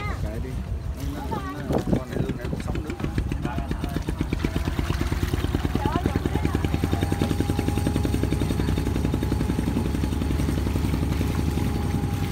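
Small river boat's engine running steadily with a fast, even chugging pulse. Voices are heard over it in the first couple of seconds.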